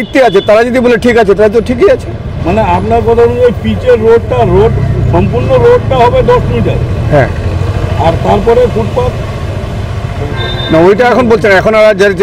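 A man talking steadily over road traffic, with a vehicle's low engine rumble swelling in the middle and fading away.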